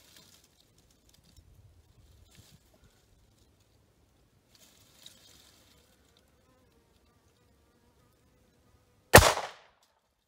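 A single 9mm pistol shot from a Taurus GX4 with a 3.1-inch barrel, about nine seconds in, ringing out for about half a second. The bullet crosses the chronograph at 1,067 feet per second, below the speed of sound.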